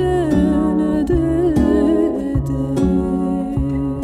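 Instrumental folk-fusion music: a woodwind plays a sustained, bending melody with vibrato over repeated double bass notes and a plucked cittern.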